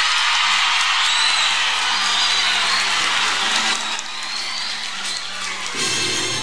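A large crowd applauding and cheering, with a few whoops, easing slightly near the end, over faint steady background music.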